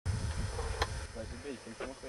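A low hum for about the first second, with a single click near its end, followed by faint voices talking.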